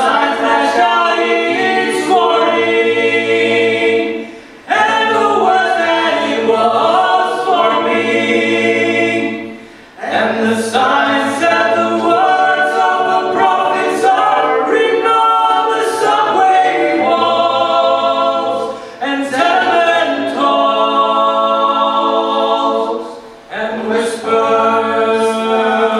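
Mixed vocal ensemble singing in multi-part harmony, largely a cappella, with low bass notes under higher sustained voices. The singing comes in long held phrases of about five to nine seconds, each ending in a short breath pause.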